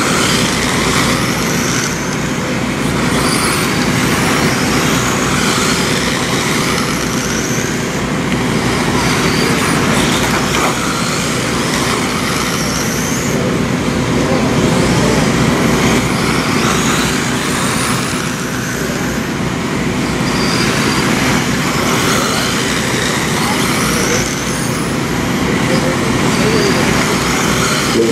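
Several 1/10-scale electric dirt oval RC cars with 17.5-turn brushless motors racing: a steady mix of high motor and gear whines that keep rising and falling as the cars accelerate and back off around the oval.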